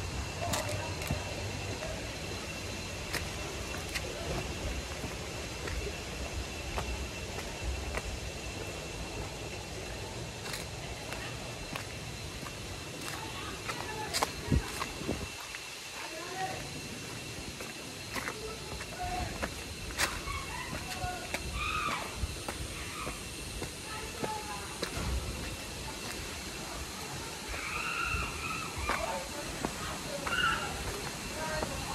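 Steady rushing of river water, with wind buffeting the microphone and a few sharp clicks. Faint, distant voices come in during the second half.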